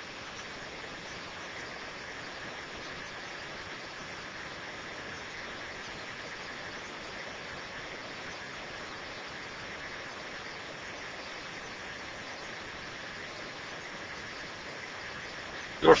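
EasyLam 27-inch roll laminator running, its motor driving the rollers as a sheet is fed through: a steady, even whir with no change in pitch or level.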